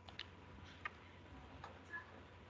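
A few faint, irregular clicks over quiet room tone.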